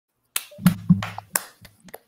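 A few scattered hand claps, about six or seven, uneven and sharp, picked up through video-call microphones.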